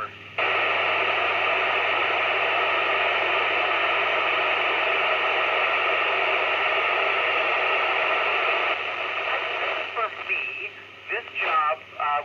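FM receiver on the ISS 145.800 MHz downlink putting out loud, steady open-channel hiss: the space station's signal has dropped between transmissions. The hiss cuts in abruptly just after the start and falls away about nine seconds in, and broken radio voice fragments follow near the end.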